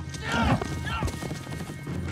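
Horse hooves clopping, with a man shouting from horseback and short falling cries that sound like a horse whinnying, in the first second. Film score music plays under it.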